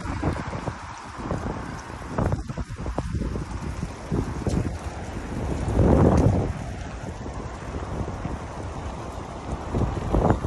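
Gusty wind buffeting the phone's microphone, a rough low rumble that comes and goes, with a stronger gust about six seconds in.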